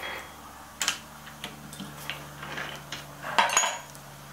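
Sharp metallic clicks and clinks of a steel chuck key working in the jaw screws of a four-jaw lathe chuck as two jaws are loosened, a few scattered clicks and then a louder clatter near the end.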